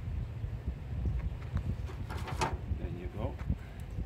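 Wind buffeting the microphone, a steady low rumble, with a brief sharp high sound about two seconds in and a short voice-like sound just after it.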